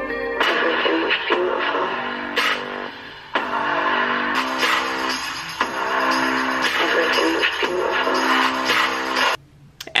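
A pop song with a voice over sustained synth chords, played back from a recording and stopped abruptly near the end.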